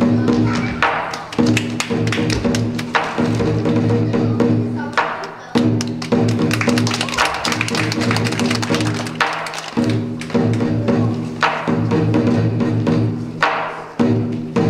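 Chinese lion dance percussion: a large drum beaten in a steady driving rhythm, with clashing cymbals and a ringing gong, played in phrases of a second or two broken by short pauses.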